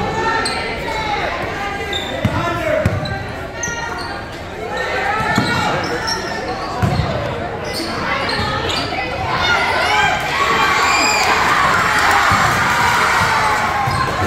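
A basketball bouncing several times on a hardwood gym floor, with players' and spectators' voices and shouts echoing in the gym. The crowd voices get louder about ten seconds in.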